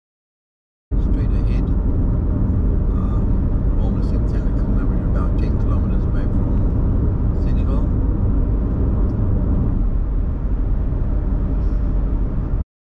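Steady low rumble of road and wind noise heard from inside a car driving at highway speed, with scattered faint clicks. It starts abruptly about a second in.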